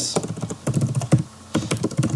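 Computer keyboard being typed on: a quick, irregular run of key clicks, with a brief pause a little past halfway before the clicks resume.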